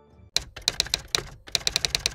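Typing sound effect: a quick, irregular run of keystroke clicks that begins about a third of a second in, matching title text being typed out on screen.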